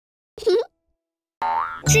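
A brief cartoon sound effect with a wobbling pitch, then a pause, then the music of a children's song starts about a second and a half in, with singing just beginning at the end.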